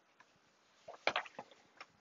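A quick cluster of light clicks and taps about a second in, with one more near the end, over faint room tone.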